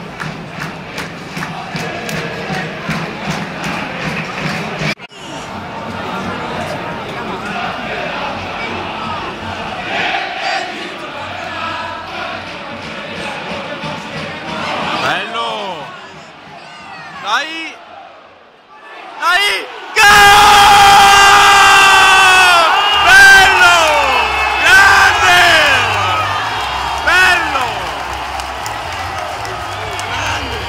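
Football stadium crowd: steady rhythmic clapping under chanting at first, then general crowd noise. About two-thirds of the way in it becomes much louder, with long, falling massed cries and whistles from the fans.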